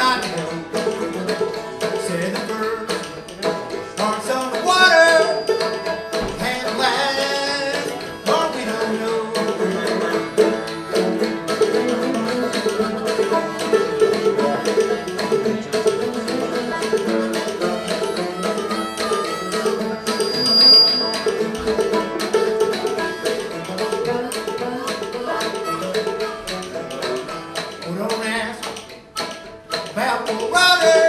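Old-time Appalachian string-band music played live: an open-back banjo and a harmonica playing a steady tune together.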